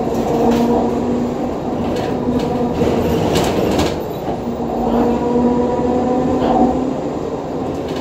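Inside a 2014 Nova Bus LFS hybrid transit bus under way: the Cummins ISL9 diesel and Allison EP40 hybrid drive run with a steady hum and whine over road rumble. Cabin fittings rattle and knock over bumps, most often about two to four seconds in.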